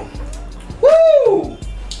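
A man's voiced 'hooo', rising and then falling in pitch for under a second, about a second in: a reaction to the burn of a chili-pepper stout.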